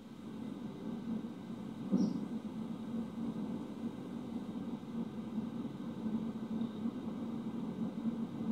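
Faint, steady low background hum of room noise, with one brief soft sound about two seconds in.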